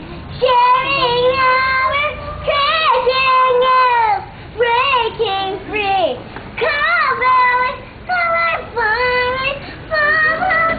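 A young girl singing, her voice gliding up and down in short phrases with brief pauses between them.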